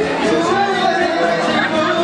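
People talking and chattering close by in a large hall, with no clear music; between songs of the acoustic guitar band.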